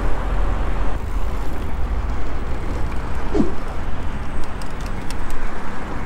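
Wind rushing over the camera microphone, with tyre and traffic noise, as an electric mountain bike rides along a city street. A brief falling squeak about three and a half seconds in, and a few faint clicks later.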